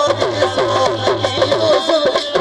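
Live Sindhi folk music: a wavering harmonium melody over a steady, quick drum beat on tabla.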